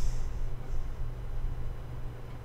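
Low steady hum with rumble underneath, and a short hiss at the very start.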